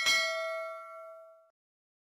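A single bright notification-bell ding, the bell-icon sound effect of a YouTube subscribe animation, struck once at the start and ringing out, fading away over about a second and a half.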